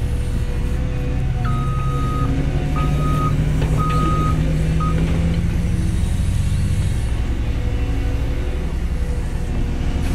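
CAT 320GC excavator's diesel engine running under hydraulic load as the bucket digs and lifts, its note heavier between about two and seven seconds in. A reversing alarm beeps four times in the first half, the last beep short.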